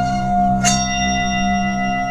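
A bell-like chime struck once, about two-thirds of a second in, ringing on with several high overtones over a steady drone of sustained ambient tones.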